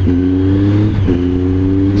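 Triumph Tiger 800's three-cylinder engine pulling under acceleration, its note climbing gently and broken by an upshift about a second in.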